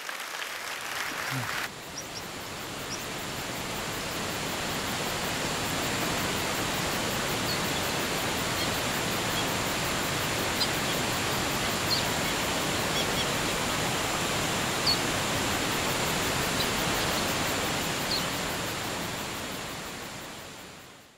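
Steady rushing of a waterfall, building over the first few seconds and then holding even, with a few brief high bird chirps scattered through it.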